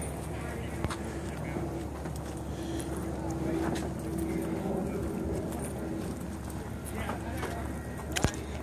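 Footsteps walking on a paved path, with indistinct voices of people talking in the background.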